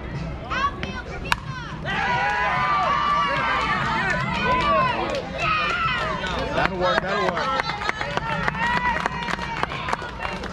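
A softball bat hits the ball with a single sharp crack about a second in. Right after, spectators shout and cheer over one another, with clapping in the second half.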